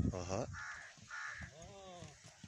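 A crow cawing twice, two short harsh calls about half a second apart, between a brief voice-like sound at the start and a gliding pitched call near the end.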